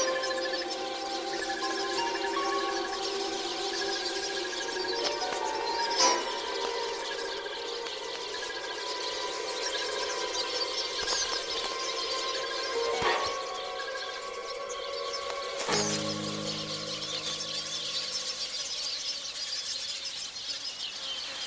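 Documentary music score of sustained notes, with a few sharp hits and deeper low notes coming in near the end. Under it run the quick, high chattering alarm calls of masked weaver birds mobbing a snake near their nests.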